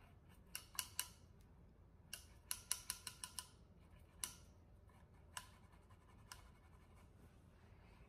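Makeup brush rubbed over a Color Switch dry brush-cleaning sponge to wipe eyeshadow off the bristles: faint, short scratchy strokes, a quick run of them from about two to three and a half seconds in, then a few single strokes.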